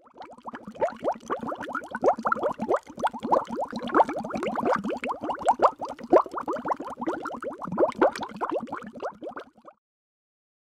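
Water bubbling: a dense, busy stream of quick bubble blips that starts suddenly and cuts off shortly before the end.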